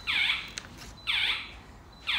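A high, alarm-like chirp that falls in pitch, repeating once a second, three times.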